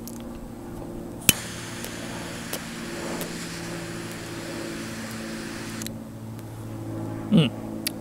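Butane torch lighter clicked alight about a second in, its jet flame hissing steadily for about four and a half seconds while toasting the foot of a cigar, then cut off suddenly.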